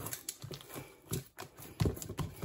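Hands kneading soft, buttery brioche dough in a wooden bowl: a few irregular dull thumps and squishes as the dough is pressed, folded and pushed against the bowl.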